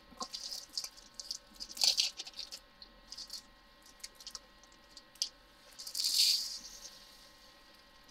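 Tiny resin diamond-painting drills rattling as they are poured and shaken into clear plastic storage compartments, in short bursts with the longest about six seconds in, among light clicks of the plastic containers being handled.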